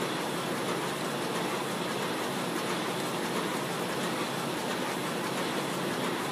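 Steady whirring machine noise from a powered-up Heidelberg Quickmaster DI printing press, even and unchanging with no distinct knocks or rhythm.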